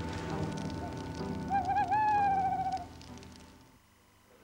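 An owl hooting: one wavering call about a second and a half in that rises, then slowly falls with a fast quaver. Campfire crackle runs under it, and everything fades down near the end.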